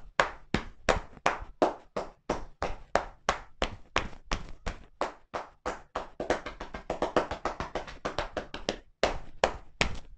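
Shoulder-tapping percussion massage: hands striking a seated person's shoulders and upper back through a cotton shirt in a steady run of dull slaps, about three to four a second. About six seconds in the practitioner strikes with the palms clasped together and the strikes come faster for a couple of seconds.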